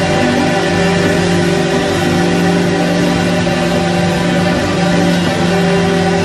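Live church band music, with a keyboard holding steady, sustained chords.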